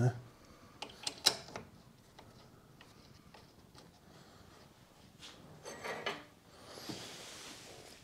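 Small metal clicks and knocks of brake caliper parts and tools being handled, the sharpest about a second in and a softer cluster near six seconds. A soft hiss follows near the end.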